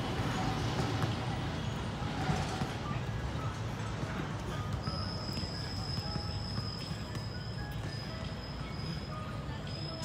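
Outdoor background: a steady low rumble with faint music of short scattered notes. A thin, steady high-pitched tone comes in about halfway through.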